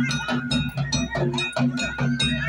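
Traditional hill folk music with a quick, steady drum beat under a sustained high melody line.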